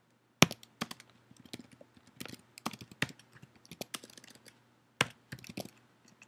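Typing on a computer keyboard: a run of irregular keystrokes, with the sharpest clicks about half a second in and at about five seconds.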